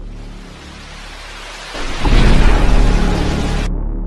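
Sound effect for an animated subscribe button: a rushing noise that swells into a loud, deep boom about two seconds in, then cuts off suddenly near the end.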